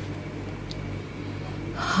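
Low steady hum of room tone, with a quick intake of breath near the end just before speech resumes.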